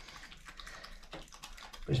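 European badger eating from a small pile of food on a tiled floor: faint, rapid crunching and clicking as it chews.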